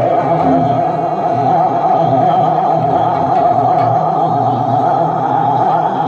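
Male ghazal singer holding a long sung note over a harmonium's sustained chords.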